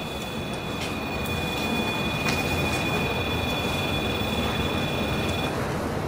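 REM pod alarm sounding a steady high electronic tone that cuts off about five and a half seconds in. The alarm signals a disturbance of the field around its antenna, which the investigators take for a spirit standing beside them. A steady low rumble runs underneath.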